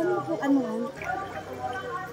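Mostly speech: voices talking, loudest in the first second and quieter after.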